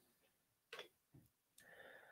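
Near silence: room tone, with a faint click or two about three-quarters of a second in.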